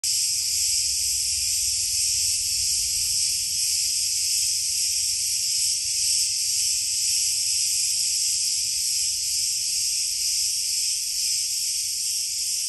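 Cicadas singing: a loud, continuous high-pitched buzz that holds steady without a break.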